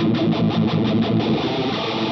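Distorted electric guitar through a MayFly Audio Sketchy Zebra phase shifter with its speed turned up high. The phaser sweep makes the sound pulse fast, about eight times a second, giving the screechy effect that suits a lead special effect rather than rhythm playing.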